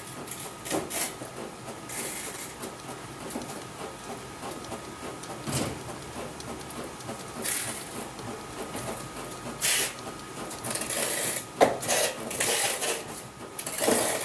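Bat rolling machine turning a slow-pitch softball bat between its rollers by hand, with irregular rubbing and rasping bursts as the bat is pressed and rolled, over a faint steady whine.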